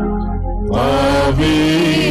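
A Telugu Christian hymn sung over instrumental backing. The voice pauses briefly between lines, with the backing sustaining, then comes back in under a second in on long held notes.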